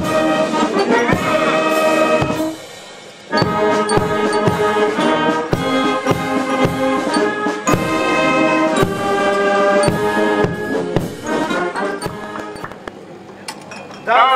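Brass band playing chords over a steady drum beat, breaking off briefly about two and a half seconds in, then playing on and fading near the end.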